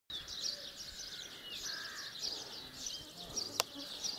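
Faint outdoor summer ambience: small birds chirping in short high notes and a few brief falling whistles, with insects buzzing. A single sharp click about three and a half seconds in.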